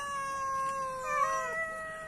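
Cats meowing for food: two long, drawn-out meows, the second starting about a second in as the first trails off.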